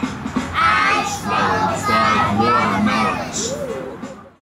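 A group of young children singing together in unison, fading toward the end.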